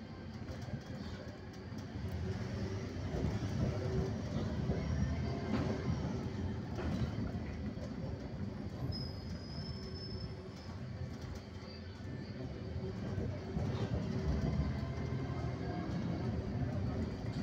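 Road and engine noise of a moving car, heard from inside the cabin: a steady low rumble that swells a little and eases as it drives.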